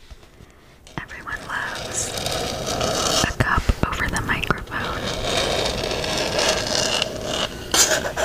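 Whispering close to a furry-windscreen microphone, with long fingernails tapping and scratching a frosted cup held right at it. The sound gets louder about a second in, with a run of sharp taps in the middle.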